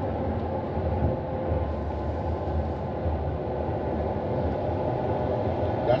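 Steady road and tyre rumble inside a moving car's cabin.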